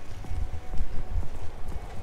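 Footsteps on a city pavement and knocks from a handheld camera being carried and turned, heard as irregular low thumps.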